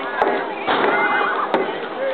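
A horse whinnies, a wavering call lasting about half a second near the middle, over background chatter, with a few sharp clicks.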